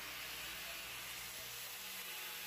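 Handheld Makita marble saw with a diamond disc running steadily while cutting a 45° bevel in porcelain tile, heard as a faint, even hiss over a low hum. The saw is being run back and forth along the cut to relieve pressure on a disc that is being forced.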